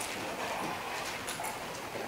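Low background noise of a lecture-hall audience settling in, with faint rustling and a few light taps.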